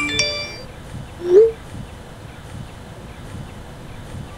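A phone text-message alert: a bright chime right at the start that rings out within half a second, then a short rising tone about a second later, the loudest sound.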